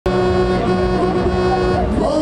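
A loud, sustained pitched tone with many overtones from the Break Dance ride's sound system, holding one pitch with slight shifts twice, over a low rumble.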